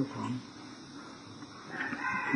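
An elderly Thai monk speaking in a recorded sermon: a phrase ends just after the start, then a pause of about a second with only the faint hiss of the old recording, and speech starts again near the end.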